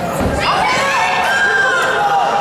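Spectators shouting and cheering, many voices at once, starting about half a second in as a judo throw brings a fighter down to the mat.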